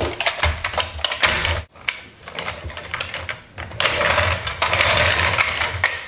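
Hard plastic toy fire truck clicking and rattling as it is handled and set on a wooden table, with a burst of quick clicks near the start and a longer stretch of dense rattling in the second half.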